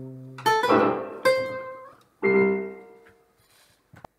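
Electronic keyboard playing a closing phrase: three chords struck a little under a second apart, each left to ring and die away until the sound fades out. A brief click comes at the very end.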